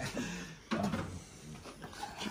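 Quiet, indistinct voices with a single knock or clunk under a second in.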